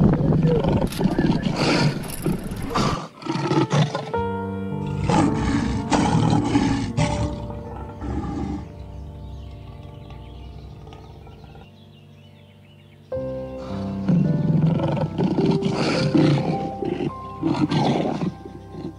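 Lion roaring in two loud bouts, one at the start and one from about three quarters of the way through. Between them, background music of sustained chords comes to the fore and the level drops.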